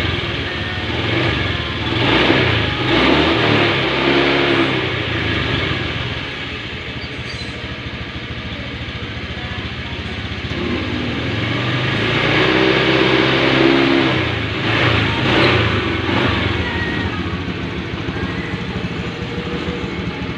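Honda fuel-injected scooter engine running while hooked up to an injector-cleaning machine through its fuel line. It idles and is revved up twice, a couple of seconds in and again just past halfway, then settles back each time.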